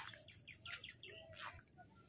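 Faint bird chirps: a quick series of short, high calls in the first second, then only quiet background.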